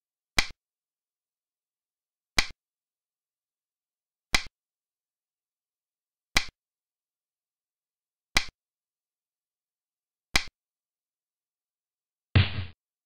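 A xiangqi game-replay move sound: a sharp piece-placing click, six times at an even two-second spacing, each click marking one move on the board.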